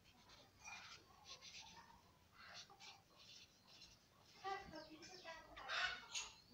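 Felt-tip marker writing on paper, heard faintly as a series of short scratchy strokes. A brief pitched sound, voice- or call-like, comes in about four and a half seconds in.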